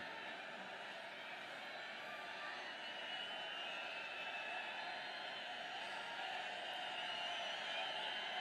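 A large crowd's steady hum of many voices, with faint wavering calls mixed in.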